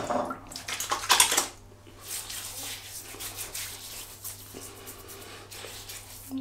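A couple of knocks of a small jar and dish, then water poured out in a steady light trickle: the brush's soaking water being tipped onto the shaving soap.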